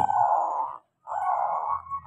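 Zebra dove (perkutut) cooing: two rolling phrases, each under a second, with a short break between them.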